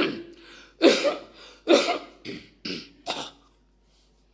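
A man coughing in a fit of about six coughs, the first the loudest and the rest weaker and shorter, dying away after about three seconds.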